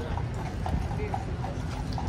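Shod hooves of a King's Life Guard's black horse clip-clopping at a walk on stone paving, with faint crowd chatter behind.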